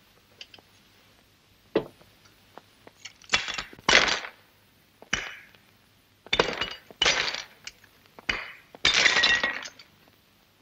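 A plaster bust being broken apart, its pieces cracking and crunching in a series of short bursts. The loudest is about four seconds in, and the last and longest comes near the end.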